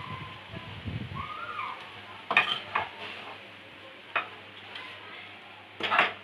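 A wooden spatula scraping soya vorta around a non-stick kadai, then knocking sharply against the pan or plate about four times.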